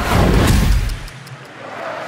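A broadcast transition sound effect: a whoosh with a deep boom, lasting about a second. After it comes a quieter, steady murmur of the stadium crowd.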